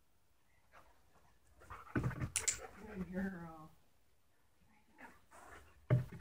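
A dog's paws striking and landing during a rebound jump: a couple of sharp knocks about two seconds in, with faint small scuffs near the end.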